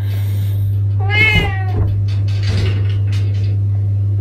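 A single meow, about a second in, rising slightly and then falling away, over a steady low hum.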